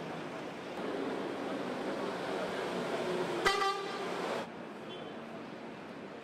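Street ambience with traffic noise and distant voices; a little past halfway a vehicle horn sounds once, a steady toot lasting about a second.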